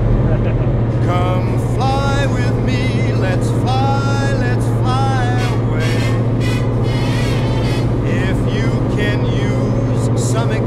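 Piston engine of a light single-engine propeller aircraft running steadily, heard from the cockpit as a loud low drone, with a voice talking over it.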